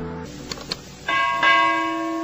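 Subscribe-animation sound effects: two short clicks, then a bell chime struck about a second in and again shortly after, ringing on with a sustained tone.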